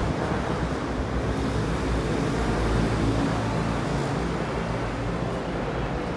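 Steady low rumble of ambient noise in an underground concrete passage, with no distinct events.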